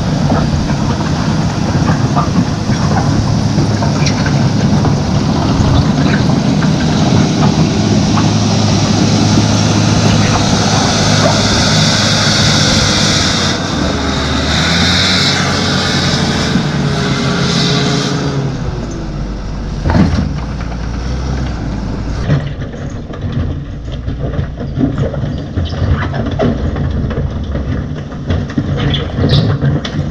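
Fiat-Hitachi W190 wheel loader's diesel engine working hard under load while its bucket shoves rocks and soil over a gravel road, with grinding and scraping of stone. About two-thirds of the way in, the sound drops to a quieter, more distant engine with scattered small clicks and knocks.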